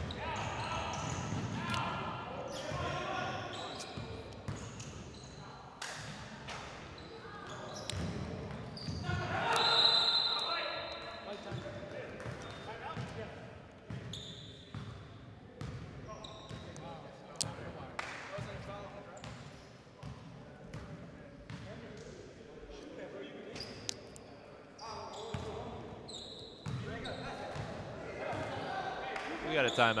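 Basketball being dribbled and bouncing on a hardwood gym floor, with sharp knocks and players' and spectators' voices echoing in a large hall. Loudest about ten seconds in, where a brief high steady tone sounds.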